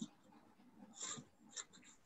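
Near silence with a few faint, short breathy sounds from a person.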